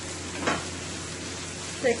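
Sliced onions and garlic sizzling steadily in hot oil in a stainless steel skillet over high heat while being stirred, with one brief scrape of the utensil against the pan about half a second in.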